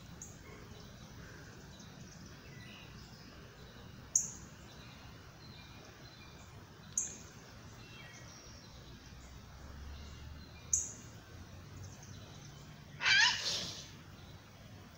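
Outdoor ambience with birds chirping. Three short, sharp, high chirps fall in pitch a few seconds apart, and a louder, longer wavering call comes near the end.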